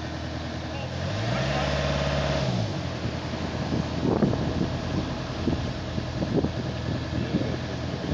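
A vehicle engine idling, revving up and settling back down once for about a second and a half, starting about a second in. Wind buffets the microphone through the second half.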